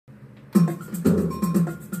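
Digital piano played, starting about half a second in: notes and chords with crisp attacks in a steady rhythm of about two beats a second.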